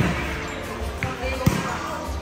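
A volleyball being hit: a few sharp thuds, the loudest about one and a half seconds in, over background voices and music.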